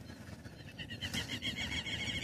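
A bird calling in a rapid trill of evenly spaced high notes, about ten a second, starting a little under a second in.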